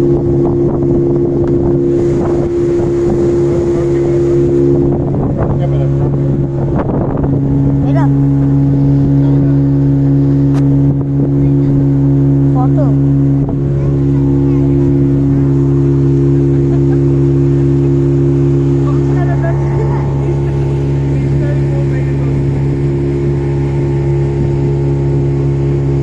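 Speedboat engine running steadily at cruising speed, a constant low drone that dips briefly about halfway through.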